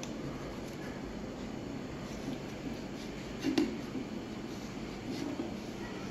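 Steady low room hum with faint sounds of a knife cutting through rigidized ceramic fiber blanket, and one small sharp click about three and a half seconds in.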